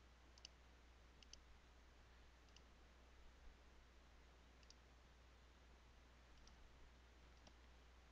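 Near silence with a handful of faint, sparse computer mouse clicks, some in quick pairs, over a low steady hum.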